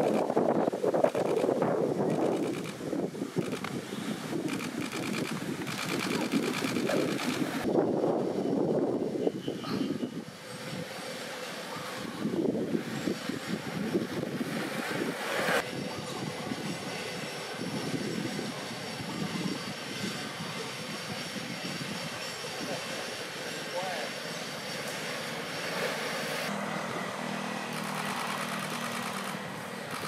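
Indistinct voices over the steady rolling rumble of a pack of inline speed skates on asphalt, louder in the first ten seconds and quieter after.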